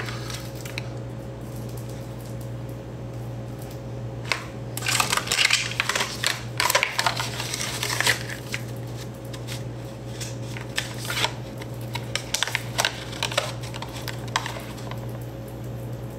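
Plastic blister packaging of a baby teether crinkling and clicking in scattered bursts as it is handled, over a steady low hum.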